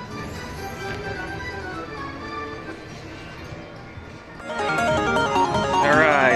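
Slot machine win celebration: a Lightning Link High Stakes machine playing its melodic jingle while the bonus win counts up. About four and a half seconds in, louder and busier music cuts in.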